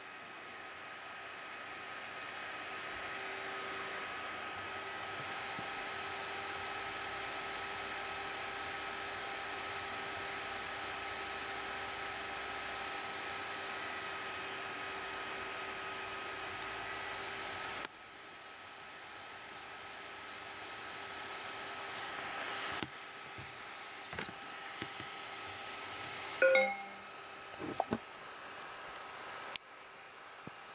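Steady low hum and hiss with a few faint steady tones, dropping in level about two-thirds of the way through. Near the end come a few soft clicks and one short, louder sound with a few tones.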